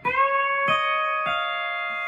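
Pedal steel guitar in E9 tuning playing single picked notes that build into a ringing chord: the first note slides up slightly into pitch, then two more notes are picked about two-thirds of a second apart and sustain together.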